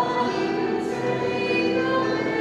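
Church music: voices singing a hymn over held accompanying notes.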